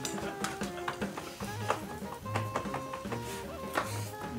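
Background music with held melodic notes over a recurring low bass note.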